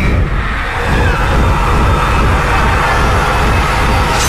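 Loud horror-trailer score and sound design: a dense, steady wash of rumbling noise with low pulses underneath.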